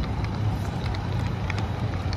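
Wind rumbling on a handheld phone's microphone, with a steady hum of street traffic underneath and a few faint ticks.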